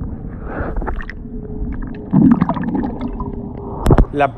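Muffled underwater sound of swimming-pool water through a submerged iPhone X microphone: low rumbling and gurgling with a faint steady hum, a louder swell about two seconds in, and a sharp splash near the end as the phone breaks the surface.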